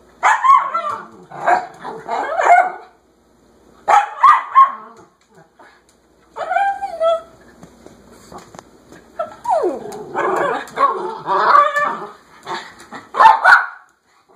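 Small Pomeranian dog yapping in repeated spells of high, sharp barks, demanding to be let outside; the longest spell comes about two thirds of the way through.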